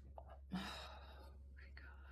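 A person's soft, breathy "oh" about half a second in, over a faint steady low hum of room tone.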